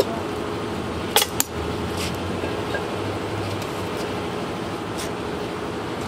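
A steady mechanical hum with a faint held drone, broken by two sharp knocks a little over a second in and a few fainter ticks later.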